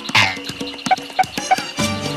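Cartoon sound effects: a quick falling whistle-like sweep, then three short frog croaks about a third of a second apart, with the Latin-style background music thinned out underneath.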